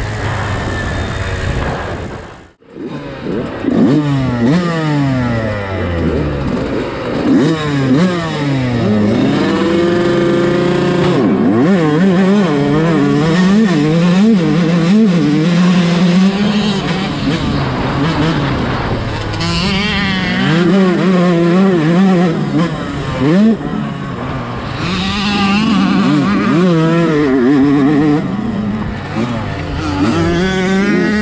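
A 125 cc motocross bike's engine ridden hard, heard close up from the bike. It revs up in quick rising sweeps and drops back on shifts and off the throttle, over and over. The sound cuts out sharply for an instant about two and a half seconds in.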